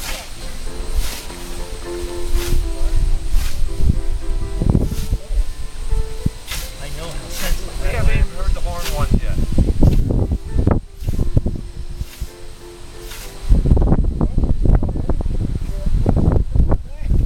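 Hand scythe swishing through standing grass, a stroke roughly every second. Voices murmur underneath, and a loud low rumble comes in for the last few seconds.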